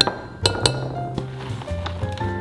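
A metal measuring cup clinks against a glass mixing bowl a few times within the first second, knocking out flour, over background music with a steady bass line and piano-like notes.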